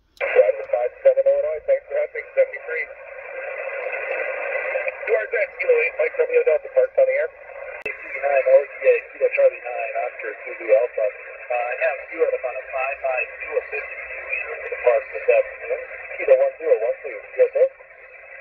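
Voice of a distant amateur station received on an HF mobile transceiver in single-sideband: thin, narrow speech, hard to make out, under a steady band hiss that starts and cuts off sharply with the signal.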